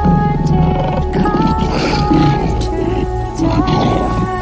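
Music with held tones, and a lion's roars and growls laid over it in several rough bursts.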